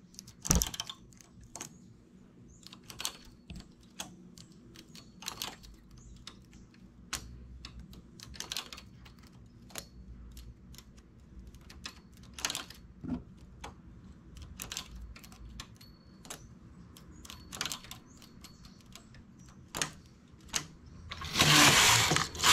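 Small irregular metallic clicks of a hand transfer tool and latch needles on a flatbed knitting machine as stitches are lifted and moved between needles to make lace eyelets. Near the end the knitting carriage is pushed across the needle bed with a loud clatter lasting about a second.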